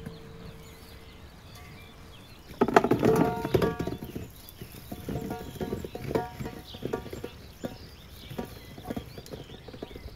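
Apples tumbling out of a straw basket into a large metal basin. A dense run of thuds starts about two and a half seconds in, with the metal bowl ringing, then scattered knocks follow as the apples settle and are shifted by hand.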